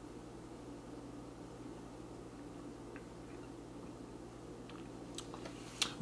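Quiet room tone with a steady low electrical hum, and a couple of faint clicks near the end.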